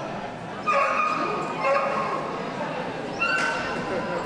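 A dog giving three high-pitched yaps, over the steady murmur of a crowded hall.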